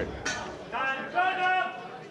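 Music cuts off at the start, and a single voice then shouts out a drawn-out call lasting about a second, from just under a second in, over a low hall murmur.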